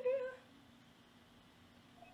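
A mezzo-soprano's voice holding the end of a sung opera note with a steady vibrato, which fades out about a third of a second in.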